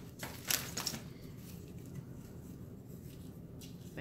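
Large metal square being shifted on a craft mat against a wooden frame: a short scrape and tap about half a second in, then only a faint steady room hum.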